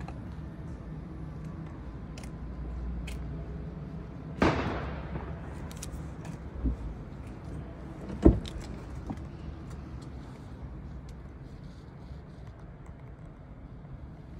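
Skoda car door being handled and opened: a sharp click with a fading ringing tail about four seconds in, a low thud, then a louder clunk of the latch releasing about eight seconds in, over a steady low hum.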